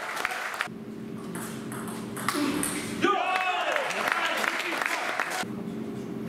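Voices in a table tennis hall between rallies, with one rising-and-falling shout about three seconds in, over a steady hum and a few sharp ball clicks.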